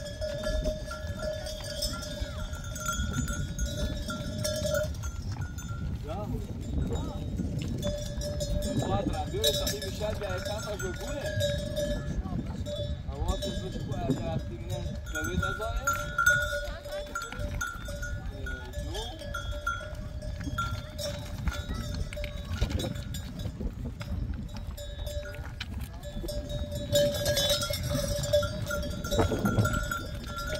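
Bells on a crowding flock of goats and sheep ringing steadily, with bleats and the shuffling of the animals underneath.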